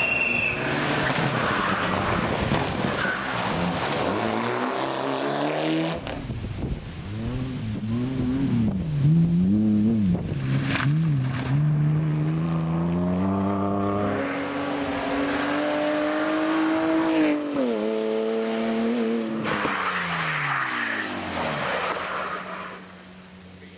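Rally car engines driven hard past the roadside in separate passes. They rev up and down through gear changes, and one holds a climbing note before dropping in pitch as it goes by. Tyre noise runs under the engines.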